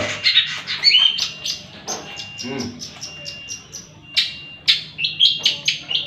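Caged long-tailed shrike (cendet) giving quick, short, sharp chirps and clicks, with a thin high held note breaking in a few times.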